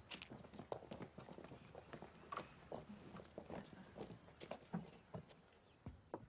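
Faint, irregular footfalls and small knocks on the ground, several steps a second with no steady rhythm, as of a group walking on a path.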